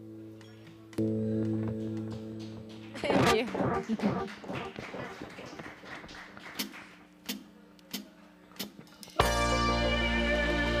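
Live band between songs: an electric guitar chord rings and fades, another is struck about a second in and held, then after a brief noisy stretch come four evenly spaced clicks, a drumstick count-in, and the full band comes in loud near the end.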